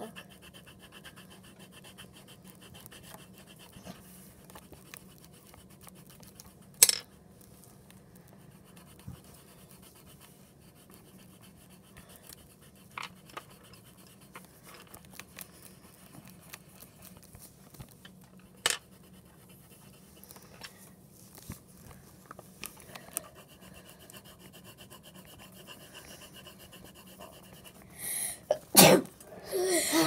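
Low room noise broken by a few sharp clicks, then a girl sneezes loudly near the end.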